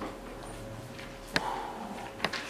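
Felt-tip marker writing on a whiteboard: a sharp tap of the tip on the board about a second and a half in, followed by a brief faint rubbing stroke.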